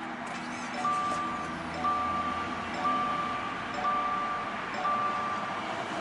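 Warning chime of a 2015–2019 Subaru Outback (higher trim), a two-tone chime repeating about once a second, five times, over a steady hiss.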